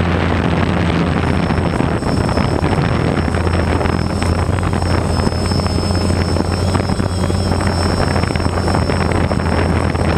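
Multirotor drone's electric motors and propellers running steadily, heard from the camera mounted on the drone: a constant low hum under a dense rushing noise, with a thin high whine above it.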